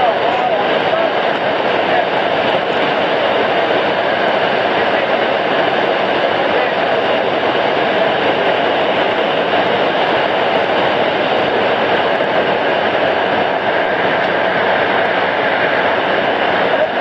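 Loud, steady drone of a skydiving jump plane's engine and propeller heard from inside the cabin.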